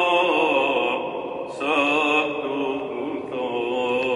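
Eastern Christian liturgical chant sung in a large church, the voices wavering in pitch. One phrase fades about a second in and a new phrase begins.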